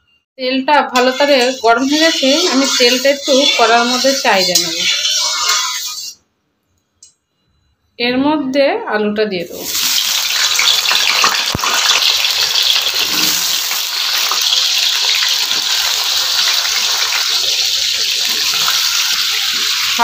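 Raw potato wedges sizzling in hot oil in a karai: a steady, dense hiss that starts about halfway through, once the potatoes are in the oil.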